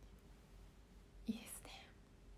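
A woman's brief whisper, about half a second long, starting a little past a second in.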